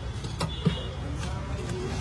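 Steady low street-traffic rumble with a few light clinks and scrapes of a metal ladle in a large brass pot as thick cooked peas are scooped out.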